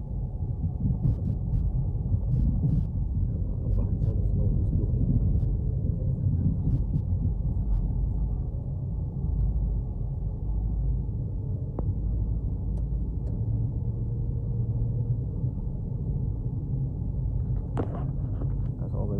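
Car interior noise while driving: a steady low rumble of road and engine noise heard from inside the cabin, with a few faint clicks.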